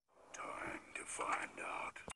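A hushed, whispered voice speaking a short line in a few breathy phrases.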